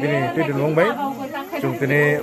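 A man talking steadily.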